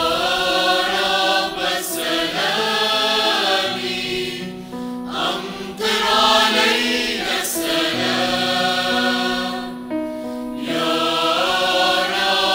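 Choir singing slow phrases of long held notes, with short breaks between phrases about five and ten seconds in.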